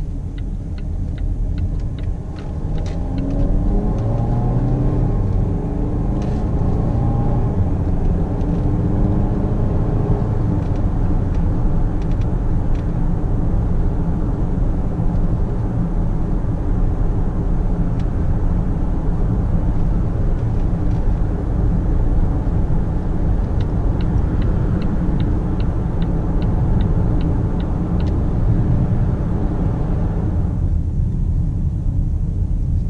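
In-cabin sound of a Volvo XC90 D5's four-cylinder twin-turbo diesel accelerating, its note rising over the first several seconds, then settling into a steady engine and tyre drone at motorway speed. Turn-indicator ticking at the start and again for a few seconds near the end.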